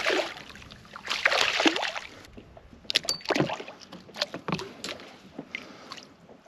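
A hooked barracuda splashing at the surface beside a kayak, with a burst of splashing about a second in. After it come a few light knocks and clicks on the kayak.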